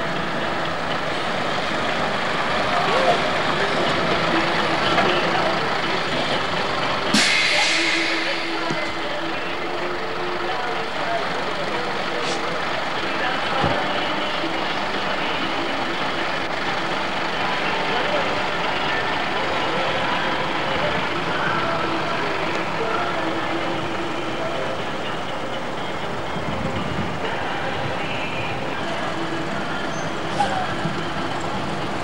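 Truck engine running, with a short loud hiss about seven seconds in.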